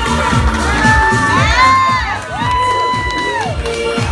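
A crowd cheering with long, high-pitched whoops over club dance music with a steady beat. There are two long whoops, one about a second in and another in the second half.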